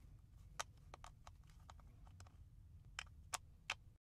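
Faint, irregular clicks and taps of a plastic three-pin plug being handled, with a few sharper clicks near the end.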